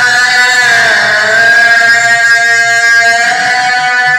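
Male voice singing long, drawn-out notes that slide in pitch, over a sustained harmonium accompaniment, in Kannada folk devotional bhajan singing.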